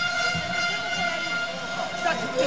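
A steady high-pitched whine with a stack of overtones that holds one pitch, under faint indistinct voices.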